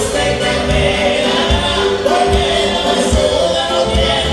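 Live band playing dance music over a loud PA, with voices singing and a steady bass beat.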